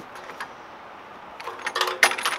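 Metal hold-back latch of a trailer's swing door clinking and rattling as it is hooked to the trailer's side wall to hold the door open. There is a single small click about half a second in, then a quick run of sharp metallic clicks near the end.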